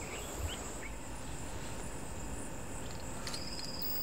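Forest ambience: a steady, high insect drone, with a few faint bird chirps and a brief higher tone near the end.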